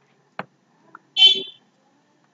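A short, high-pitched buzzy beep lasting about half a second, a little past the middle, with a faint click shortly before it and another just after.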